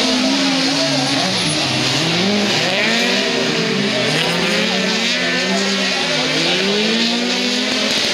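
Several autocross cars racing together on a dirt track, their engines revving up and down over one another as they accelerate, shift and lift off through the corners.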